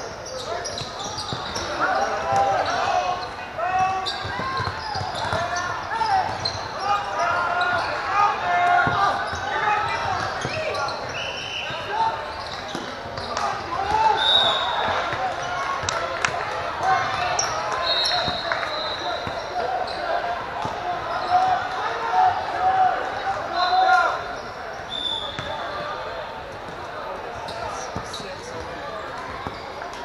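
Gym game noise in a large echoing hall: many spectators talking and calling out at once, with a basketball bouncing on the hardwood floor and a few brief high squeals in the middle stretch. The crowd noise settles lower over the last few seconds.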